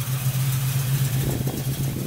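Chevrolet 350 small-block V8 idling steadily, heard from the open engine bay.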